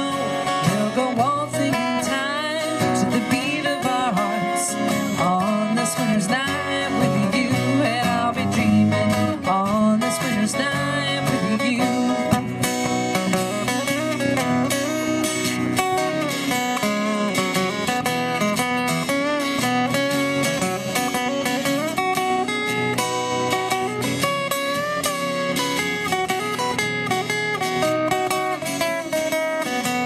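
Two acoustic guitars playing an instrumental break in a folk song, steady and continuous.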